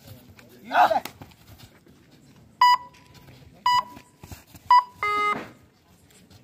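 Electronic beeper sounding three short, high beeps about a second apart, then one longer, lower beep, like a countdown ending. Shortly before the beeps, a kabaddi raider's voice is heard once in his 'kabaddi' chant.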